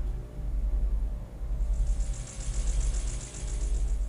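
A film soundtrack: a steady low pulsing rumble, joined about one and a half seconds in by a fast, high-pitched rattle that cuts off suddenly at the end.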